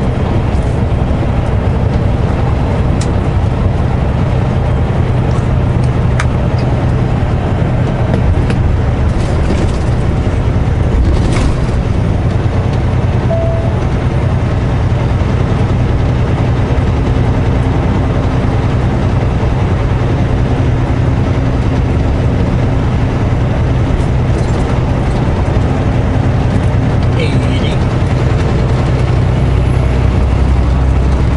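Semi-truck's diesel engine running steadily at highway cruise on cruise control, with tyre and road noise, heard from inside the cab.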